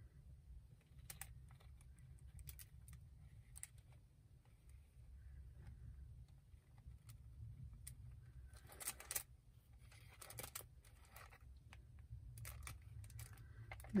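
Faint scattered clicks, taps and rustles of cardstock and a plastic bottle of tacky glue being handled as glue is squeezed out along the card, with a small burst of clicks about nine seconds in, over a low steady hum.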